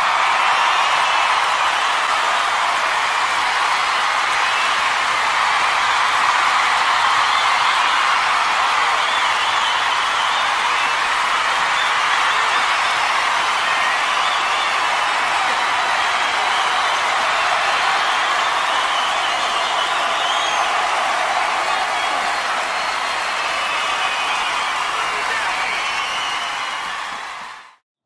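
A large theatre audience applauding and cheering, a steady dense mass of clapping and voices that cuts off suddenly near the end.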